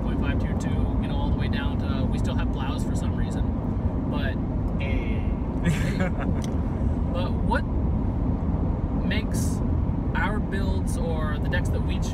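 Steady low rumble of a car driving at road speed, heard from inside the cabin, under people talking.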